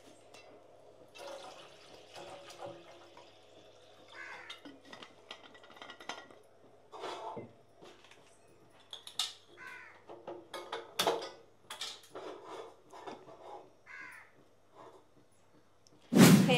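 Steel cooking pots and a water bottle knocking and clinking as they are handled on a kitchen counter, the knocks coming thick and loudest in the second half. A short bird-like call sounds three times, a few seconds apart.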